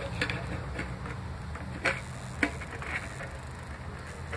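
Handling noise from a handheld phone being moved around, a steady low rumble, with two brief sharp clicks about two and two and a half seconds in.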